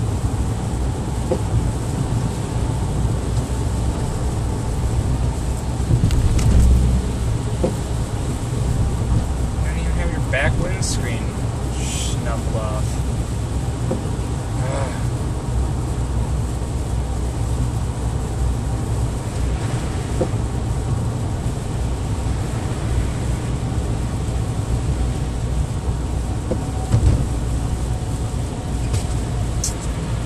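Steady low engine and road drone inside a car's cabin, tyres running on a wet, snowy highway while cruising, with a louder low rumble about six seconds in.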